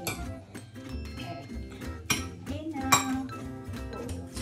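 Metal fork clinking against a ceramic bowl while egg and bread cubes are stirred, over background music. There are two sharper clinks, about two and three seconds in.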